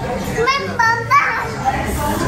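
A young child's high-pitched voice, a few short rising and falling vocal sounds in the first half, over restaurant chatter.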